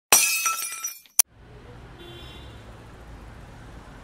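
Intro sound effect: a sudden loud crash with bright ringing tones, like glass shattering, fading over about a second, then a sharp click and a low steady hum.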